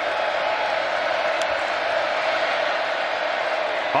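Large stadium crowd's steady noise during a football play.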